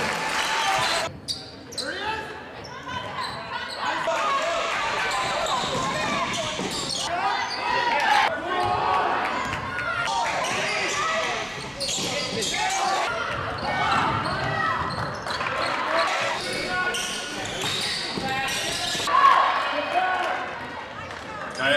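Basketball game in a gymnasium: a ball bouncing on the court amid crowd voices and chatter echoing in the hall.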